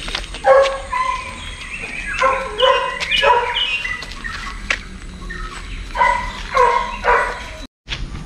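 A dog yipping: short high-pitched yelps in three clusters, about eight in all, some falling in pitch.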